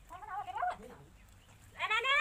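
A goat bleating twice: a shorter call in the first second and a louder, wavering call starting near the end.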